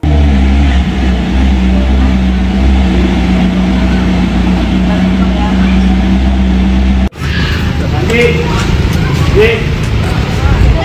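Ferrari sports car engine running steadily at idle, a loud low hum. About seven seconds in the sound cuts abruptly, and voices then talk over the running engine.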